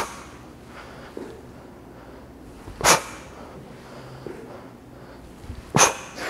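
A man doing step-up hops on a plyo box gives a sharp, forceful breath with each hop: three short bursts, about three seconds apart. Fainter footfalls on the box come in between.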